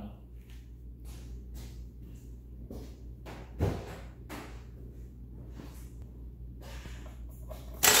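Faint irregular knocks and shuffling, with a louder thud about three and a half seconds in. Near the end, a loud steady noise starts suddenly: the starter begins cranking the 2004 Subaru Forester's flat-four engine for a compression test, with the gauge fitted in one cylinder.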